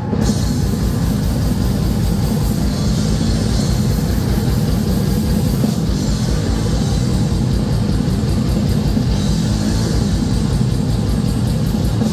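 Death metal band playing live through a PA: heavily distorted guitars and bass over a drum kit, with a fast, even pulse of kick-drum beats.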